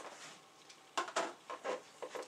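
Soft handling noises: a short click at the start, then a few brief rustles and taps about a second in.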